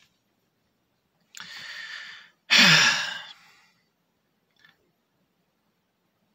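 A man draws an audible breath in, then lets out a louder, voiced, exasperated sigh that falls in pitch. A faint click follows about a second later.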